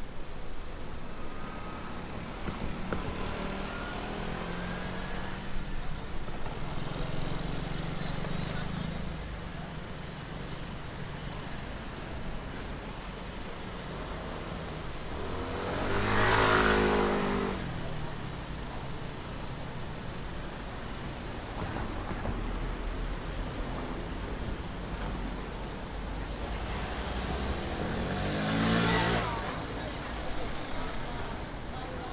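City street traffic with engines running and vehicles moving past. A motor scooter passes close by about halfway through, the loudest sound, and another engine passes close near the end, its pitch dropping.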